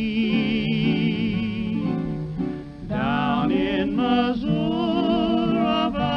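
Early-1930s country song recording: guitar accompaniment under a male voice singing long held notes with a wide vibrato, with a short break between phrases about halfway through.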